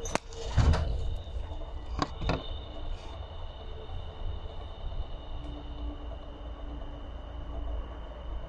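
Turbo Direct GTX3586R turbocharger's compressor wheel spun up by hand and left freewheeling, with a few light knocks from the hand at the inlet near the start and about two seconds in.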